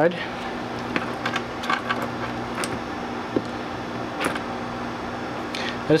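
Steady low electrical hum in the background, with a few light clicks and taps as the aluminium-cased ebike motor controller is turned over and handled with multimeter probes.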